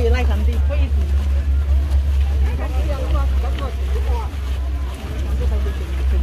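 Voices of a walking group talking in the background over a steady low rumble.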